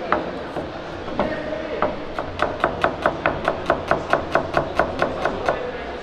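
Chef's knife chopping a small red onion on a plastic cutting board: a few separate knocks of the blade on the board, then a fast, even run of strikes, about six a second, that stops shortly before the end.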